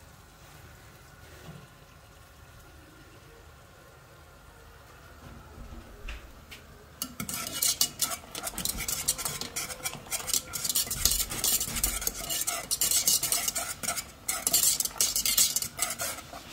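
A metal wire whisk beating cornmeal mămăligă (polenta) as it thickens in a pan, a fast, busy scraping and clicking of the wires against the pan that starts about halfway in. Before it there is only a faint steady hiss.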